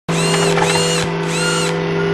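Synthesized mechanical sound effect: a steady low electronic hum under three short high whirs that rise and fall, like a servo motor turning.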